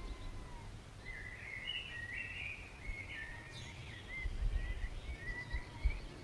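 Woodland ambience: a songbird sings a run of quick chirping, warbling notes over a low rumble, which grows louder near the end with a couple of bumps.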